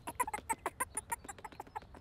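A cartoon chick sound effect: a rapid, uneven run of short clucking clicks, about nine a second.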